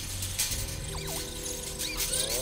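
Film score music with a couple of short clicks near the start, then high squeaky chirps from the caged baby tooth fairies, about a second in and again near the end.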